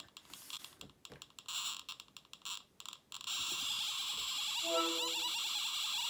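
TriField TF2 EMF meter's speaker crackling with irregular clicks as it picks up an iPhone's cellular radio bursts. About three seconds in it changes to a steady, dense high-pitched buzz as the phone's RF output rises with an incoming FaceTime call. A short held tone sounds near the end.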